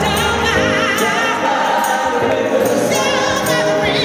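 Live gospel music: a female lead voice singing with a wide vibrato over backing vocals and keyboards.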